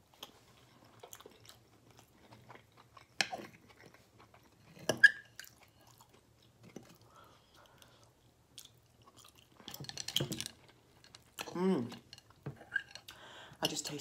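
Close-up eating sounds: chewing and mouth noises of a forkful of baked penne pasta with peas and tomato sauce, with a few sharp clicks, the loudest about five seconds in, from a metal fork against a glass baking dish. A short hummed vocal sound comes near the end.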